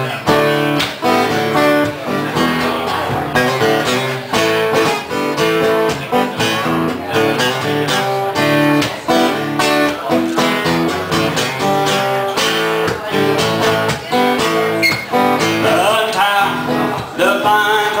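Acoustic guitars strumming chords in a steady rhythm, the instrumental intro of a live country-style song; near the end a bending melody line joins in.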